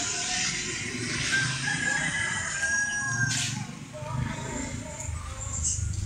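A rooster crowing once, one long, drawn-out call of about two seconds near the middle, over a low rumbling background.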